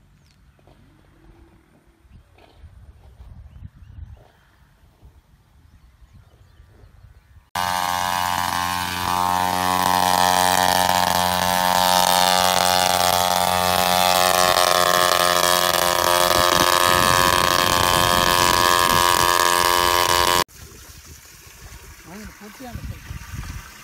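Small engine of a motorised knapsack sprayer running steadily at high speed. It cuts in suddenly about seven seconds in and cuts off abruptly near the end, after faint outdoor sounds.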